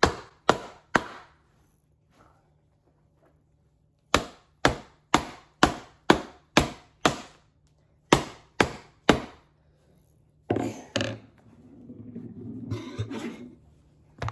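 Wooden glove mallet pounding the hinge of a hot-water-treated Rawlings Pro Preferred leather baseball glove resting on a pillow. The strikes come in runs of sharp whacks about two a second, with short pauses between runs. Near the end there are two louder knocks, then rustling as the glove is handled.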